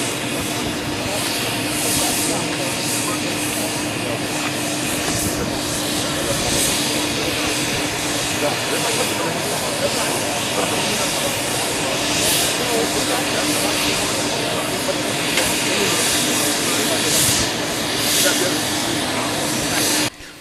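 Steady aircraft engine noise, a continuous rush with a constant hum, with indistinct voices of people nearby.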